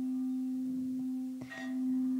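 Quartz crystal singing bowl ringing with a steady low tone. About one and a half seconds in, the mallet knocks the bowl briefly, and the tone swells again.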